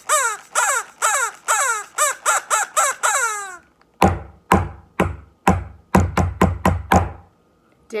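A run of about ten short bird-like calls, each falling in pitch. Then, about four seconds in, a played rhythm of eleven sharp knocks: four even beats, three quick pairs and a final beat (ta ta ta ta, ti-ti ti-ti ti-ti, ta).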